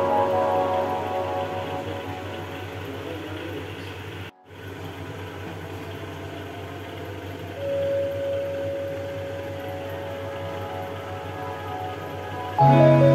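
Background music at a low level, broken by a brief dropout about four seconds in; a single held note enters after about seven and a half seconds.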